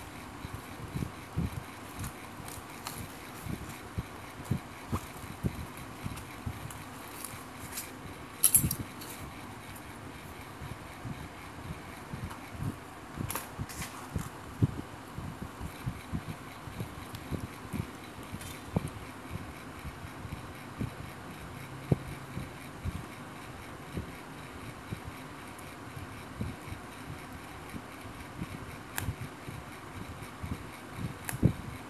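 Handling sounds of hand-sewing a fabric lining into a crocheted bag: small scattered clicks and rustles as the needle and thread are worked through the cloth, over a steady background hiss. A sharper cluster of clicks comes about eight seconds in, and another a few seconds later.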